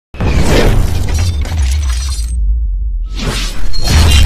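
Logo-intro sound effects: a loud glass-shattering crash over a music track with heavy bass. The crash dies away about halfway through while the bass carries on, then a second rush of noise swells up near the end.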